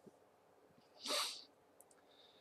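One short, hissing burst of breath from a man's nose and mouth, about a second in and lasting about half a second.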